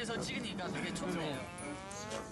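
Talking from the played show, then near the end one drawn-out, low held call lasting about half a second, at a nearly steady pitch.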